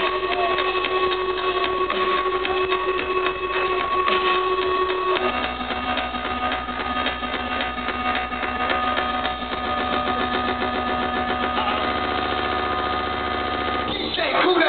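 Electronic dance music played loud over a festival sound system and picked up by a small camera's microphone: a held, buzzing synth chord over a steady bass, switching to a new, lower chord about five seconds in.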